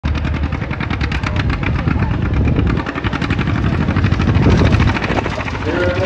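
John Deere pulling tractor's engine running loud at high revs, hitched to a pulling sled, with a rapid, even firing rhythm and a surge in loudness a little past the middle.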